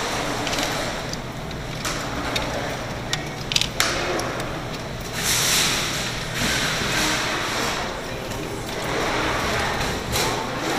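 Busy arcade room noise with indistinct background voices, a few sharp clicks about two and three and a half seconds in, and a louder hissy rush around five seconds in.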